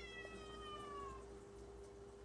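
A single faint, drawn-out cat meow that falls slowly in pitch and fades out after about a second.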